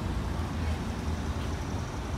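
City street traffic: a steady low rumble of car engines and tyres.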